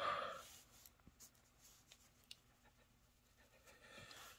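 A brief breathy rush of noise, fading within about half a second, then faint rubbing and small clicks from handling a small die-cast toy car, close to room tone.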